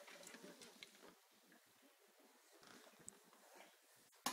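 Near silence: faint room tone with a couple of small ticks.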